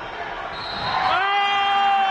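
Gym crowd noise, then about a second in a spectator's loud, sustained shout held on one pitch, which starts to trail off at the end.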